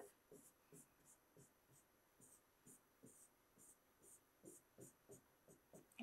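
Faint, quick strokes of a pen drawing diagonal shading lines on an interactive whiteboard's screen, about two or three strokes a second.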